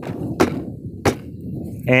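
Two short, sharp knocks about two-thirds of a second apart as a folded collapsible military shovel is handled on a plastic cooler lid.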